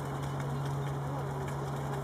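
Faint bird calls, short gliding notes, over a steady low hum.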